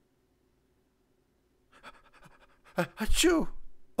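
A man's voice, silent at first: about halfway in, faint crackly breathing, then a short loud voiced exclamation with a bending pitch, acted out for effect rather than words.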